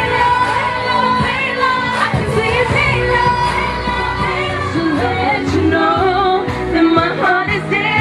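Women singing a pop song into microphones over backing music with a steady bass line.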